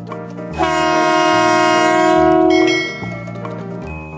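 Background music with a steady beat. About half a second in, a loud horn blast holds one pitch for about two seconds over the music, then stops.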